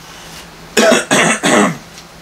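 A man coughing: a quick run of three coughs starting about a second in.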